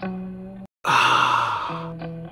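A man's loud, breathy sigh, falling in pitch and lasting about a second: a satisfied exhale after a swallow of liquor. It follows a brief gap of silence in guitar background music, and the music resumes near the end.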